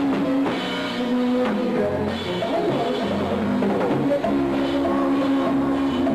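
A band playing an instrumental passage with a drum beat, a bass line that changes note about once a second, and sustained chords.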